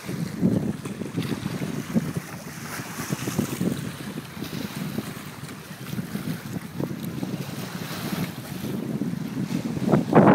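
Wind gusting on the microphone in uneven rumbling buffets, over small waves lapping against the rocks of the shoreline.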